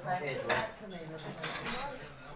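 Metal cutlery clinking and scraping against a china plate as a fork works at food, with sharp clinks about half a second in and again near the end.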